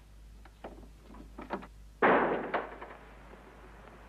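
A few light knocks or steps, then a door slammed shut about two seconds in, the loudest sound, dying away over about a second.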